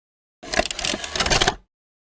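Marker scribbling on paper: a dense run of rapid scratchy strokes lasting about a second.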